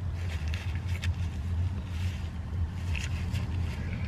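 Steady low hum of a car, heard from inside its cabin, with faint soft rustles over it.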